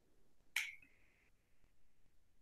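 A single sharp click from a marker on a whiteboard about half a second in, then a faint, brief scratch as the marker is drawn across the board.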